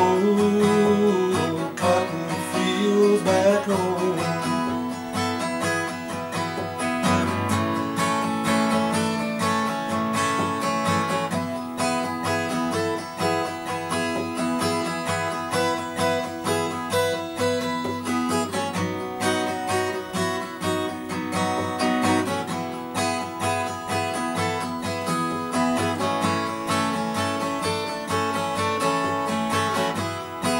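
Acoustic guitar strummed steadily through an instrumental break in a folk song. A sung phrase trails off in the first few seconds, then the guitar plays on alone.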